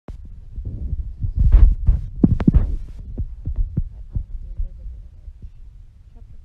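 A run of deep, heavy booms and thuds, loudest a second or two in, then thinning out into weaker, scattered thumps.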